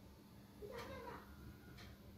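A single faint call a little under a second in, lasting about half a second, its pitch rising and then falling, over a low steady hum.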